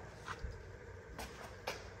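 Quiet room tone with a few faint, short clicks.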